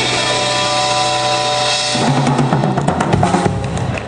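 Live blues band ending a song: an electric guitar chord is held and rings for about two seconds, then the drum kit comes in with cymbal and bass drum hits while the guitar plays a run of low notes as a closing flourish.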